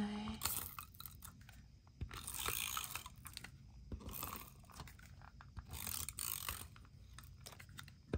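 Paper and tape being handled at a craft table: a few short crinkly rustles a second or two apart, with light clicks and taps in between.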